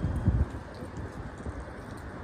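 Walking footsteps with low thumps over a low rumble, the loudest thump just after the start and lighter steps after it.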